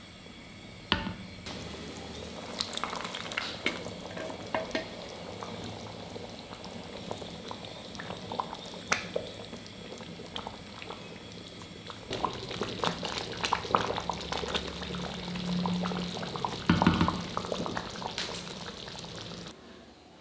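Thick rice-and-milk pudding bubbling and plopping in a metal pot as a spatula stirs it, with scattered clicks and scrapes of the spatula against the pot. The stirring gets busier and louder about two-thirds of the way in, then stops abruptly just before the end.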